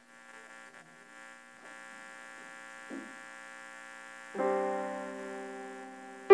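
Electric keyboard playing softly: a held chord fades in, then a louder chord is struck about four seconds in and slowly dies away.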